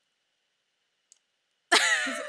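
Near silence with a faint click about a second in, then a sudden loud, breathy burst of a person's laughter breaking out near the end.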